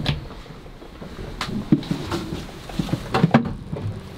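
Scattered light clicks and knocks, like things being handled in a small cabin, with a few brief faint voice sounds between them.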